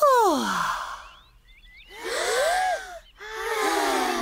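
Cartoon voices taking exaggerated deep breaths and sighing them out. A woman's breathy sigh falls in pitch at the start, then a group of children's voices breathe in and let out long 'aaah' sighs, several gliding down together near the end.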